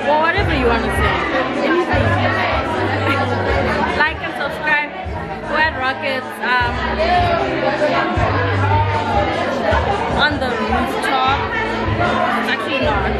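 Overlapping chatter of several voices over background music with a low bass line.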